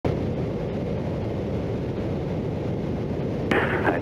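Steady drone of a single-engine light aircraft's engine and propeller heard from inside the cockpit in cruise flight, muffled and low. A radio call cuts in near the end.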